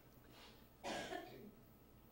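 A man gives one short cough, clearing his throat, about a second in.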